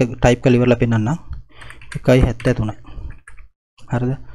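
Typing on a computer keyboard, a run of quick key clicks, entering values into a spreadsheet, after a few spoken words at the start.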